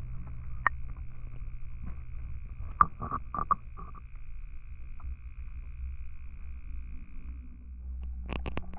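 Muffled sound picked up by a GoPro held underwater in a fish tank: a steady low rumble with a faint thin high whine, and a few sharp clicks, most of them in a quick run about three seconds in.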